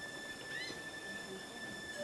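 A short, rising animal call about half a second in, over a faint steady high drone.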